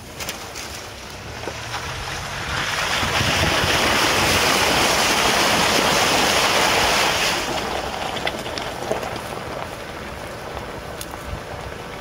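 Water rushing and splashing along the side of a Toyota Land Cruiser as it drives through a shallow river. It swells a couple of seconds in, stays loud for about five seconds, then eases off as the vehicle leaves the water.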